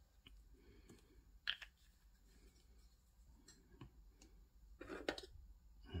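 A few faint, sparse clicks and taps from a small paint bottle and its cap being handled while silver paint is squeezed onto a palette. The sharpest click comes about one and a half seconds in, and a short cluster of clicks comes near the end.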